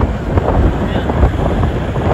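Wind buffeting the microphone over a steady low rumble, with scattered crackles.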